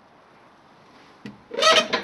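Faint background hiss, then a single click about a second in, followed by a brief pitched vocal sound from a person near the end.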